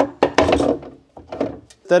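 Plastic battery case lid being worked loose and lifted off: a knock, then about half a second of scraping rub, then a few light clicks.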